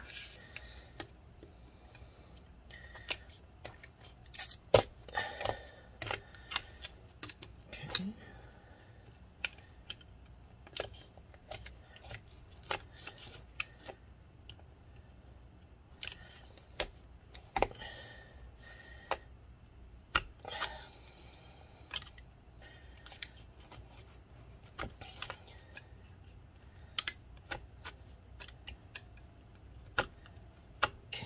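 Metal putty knife being worked under a laptop's lithium-polymer battery cells to cut the adhesive that holds them to the case: irregular clicks and short scrapes of the blade against the cells and aluminium case.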